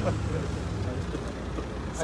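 A car's engine idling close by, a steady low hum that fades slightly after about a second, with faint voices of people around it.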